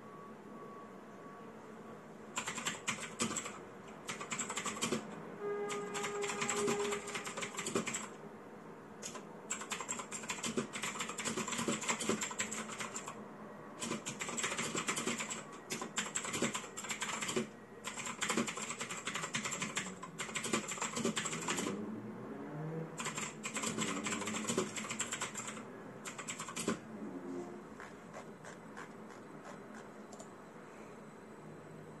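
Typing on a mechanical keyboard: quick runs of key clicks start about two seconds in. They are broken by several short pauses and stop a few seconds before the end.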